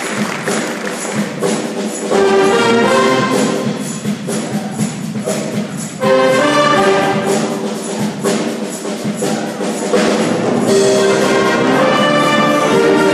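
A large band of brass, saxophones and percussion playing loud brass-led chords, with fresh loud entries about every four seconds over drum and cymbal strokes.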